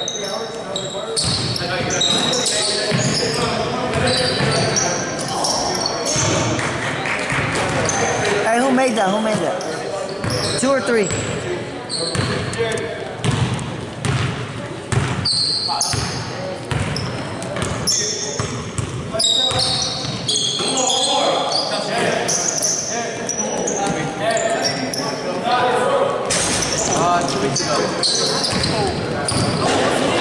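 Sounds of a basketball game in an echoing gym. A ball bounces on the hardwood floor again and again, sneakers give short high squeaks, and players and spectators call out and shout.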